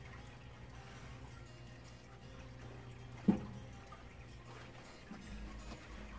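Quiet handling of a foam packaging insert from a toy figure box, with one sharp knock about three seconds in, over a steady low hum.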